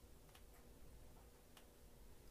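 Near silence: room tone with two faint ticks, a little over a second apart.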